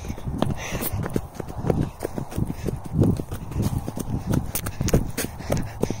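Footsteps tramping through dry grass and brittle stalks: irregular low thuds of the steps, with the crackle and snap of dry stems underfoot.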